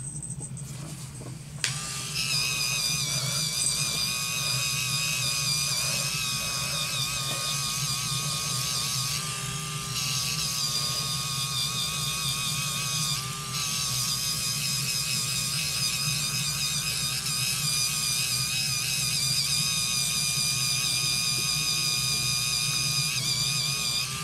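Duvolle Radiance Spin Care electric facial cleansing brush switched on about a second and a half in, its small motor whining steadily as the spinning brush head is worked over the face. The whine wavers slightly in pitch and dips briefly twice near the middle.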